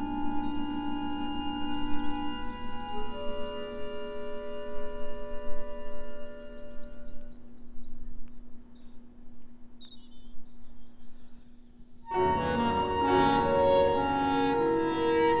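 Background music: long held organ-like chords that slowly thin out and fade, with faint high chirps above them. About twelve seconds in, a fuller passage of pitched ensemble music enters abruptly.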